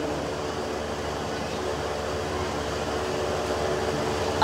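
Steady background hum and hiss with a faint held tone, even throughout.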